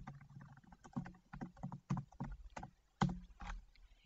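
Typing on a computer keyboard: a run of irregular keystrokes, with a louder keystroke about three seconds in.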